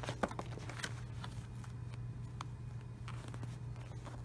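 Light handling noises from a cardboard number board: a few soft clicks and taps near the start, then faint scattered ticks as it is moved and laid on the carpet, over a steady low hum.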